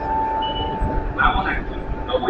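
A held electronic chime note that fades after about a second, then a recorded platform announcement starts, warning that an up train is approaching.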